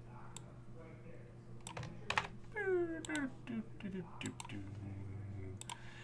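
Computer mouse and keyboard clicks, scattered one at a time while a spreadsheet is edited and a web page is opened. About halfway through, a voice makes a short murmur that falls in pitch.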